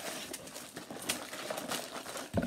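Small cardboard toy boxes being torn and pried open by hand: scratchy tearing and crackling of card with several sharp clicks and snaps.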